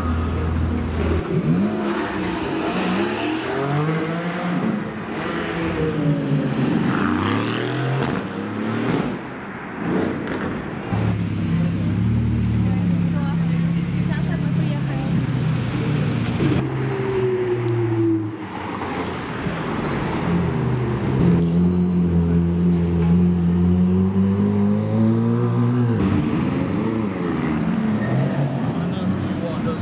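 Supercar twin-turbo V8 engines, a Mercedes-AMG GT Black Series then a Ferrari Roma, revving and pulling away in turn. Pitch rises and falls repeatedly, with a steadier low-speed stretch in the middle.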